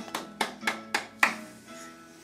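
Hands clapping about five times, roughly three claps a second, over faint background music.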